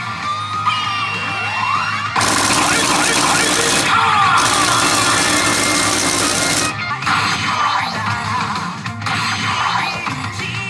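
Newgin P Shin Hana no Keiji 3 pachinko machine's music and effects: a rising sweep about a second in, then a loud, dense burst of jackpot fanfare lasting about four and a half seconds that marks a big win, dropping back to the game's music near the end.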